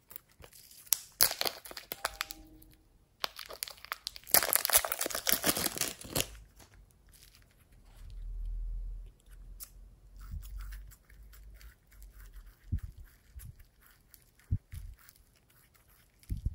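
Plastic wrapper of a packet of soft modelling clay crinkling and tearing open, in two loud bursts within the first six seconds. After that, quieter crackling and a few soft thumps as the unwrapped clay is handled.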